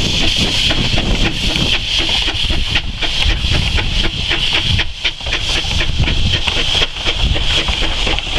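Narrow-gauge steam locomotive working past with a loud, steady hiss of escaping steam over the low rumble of the train.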